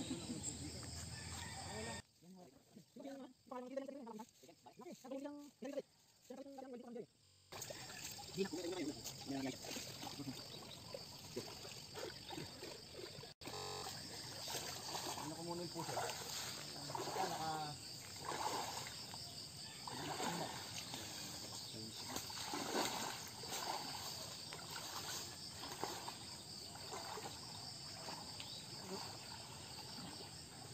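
Indistinct voices talking, over a steady high chirring of insects.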